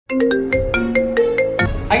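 Smartphone incoming-call ringtone: a quick melody of short pitched notes, about five or six a second, that stops about a second and a half in. A man's voice starts just at the end.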